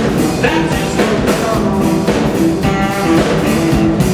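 Live blues band playing: electric guitars over a drum kit, with amplified sound from the stage.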